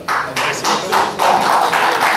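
Audience applauding: a dense run of many hand claps.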